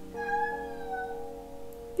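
A domestic cat meowing: one long, drawn-out call held at a steady pitch.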